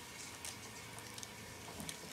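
Silicone spatula pressing and smoothing sticky Rice Krispies treat mixture against a paper lining in a glass baking dish: faint, scattered little crackles and rustles.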